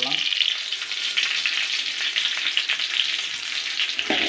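Shallots and dried red chillies frying in hot oil in a metal pan: a steady sizzle with a fine crackle.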